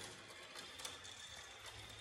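A marble rolling along a plastic marble-run track, a faint steady rolling with a few light clicks.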